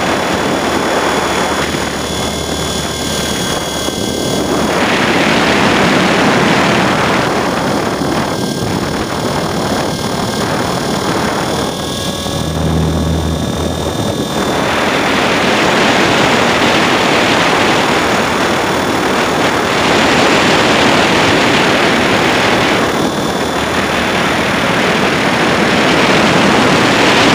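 E-flite Blade 400 electric RC helicopter heard from a camera on board: a loud rush of rotor wash and air over the microphone, with a faint high whine from the motor and gears, swelling and easing as the helicopter manoeuvres.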